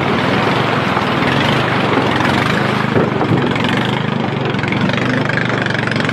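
A small boat's outboard motor running steadily, with water churning and splashing around the bow as caimans thrash in the shallow channel.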